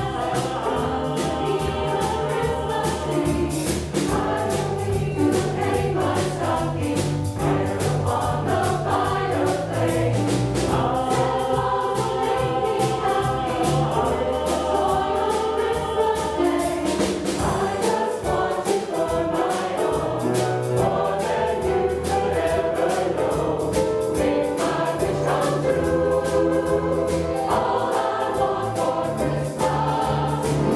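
Mixed choir of men and women singing in parts over a band accompaniment of piano, drums and bass guitar, with a steady beat throughout.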